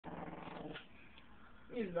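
Long-haired Chihuahua giving a faint, steady low growl for just under a second as a hand reaches over its head.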